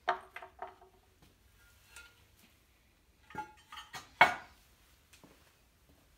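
Ceramic kiln shelves and kiln furniture clinking and knocking as an electric kiln is unloaded: a few sharp clinks with brief ringing at the start, more around three and a half seconds, and the loudest knock a little after four seconds.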